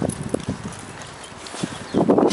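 Scattered footfalls on asphalt: a handful of short, light taps and thumps, the loudest right at the start.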